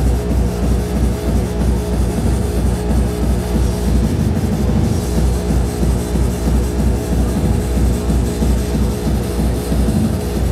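Loud hardcore techno with a fast, steady, overdriven bass drum pounding under sustained synth tones.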